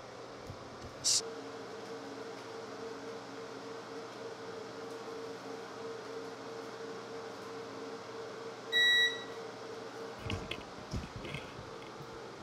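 A digital bathroom scale gives one short electronic beep about nine seconds in, as it settles on its reading. A steady hum runs underneath, with a sharp click about a second in and soft thumps after the beep.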